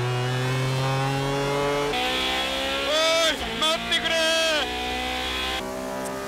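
Naturally aspirated racing car engines heard from onboard, running at high revs under acceleration with the pitch climbing slowly. The engine note changes abruptly twice as the sound switches from one car to another. A driver shouts over the engine about halfway through.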